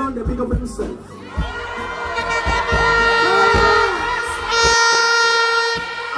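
Two long, steady blasts of a plastic horn, the first about two seconds in and the second just after, over a shouting crowd and music with a low thumping beat.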